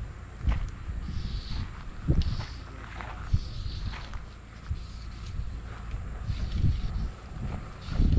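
Footsteps on a grassy dirt track, heard close as irregular soft thuds over a low rumble, mixed with a few light clicks and rustles from handling the fly rod and line.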